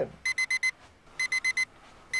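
Digital alarm clock beeping in quick bursts of four high beeps, about one burst a second, twice here.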